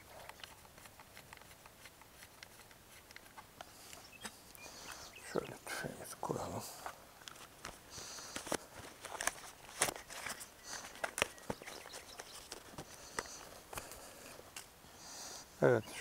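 Faint, scattered clicks and small knocks of gear being handled on a bench while a shotgun choke tube is changed.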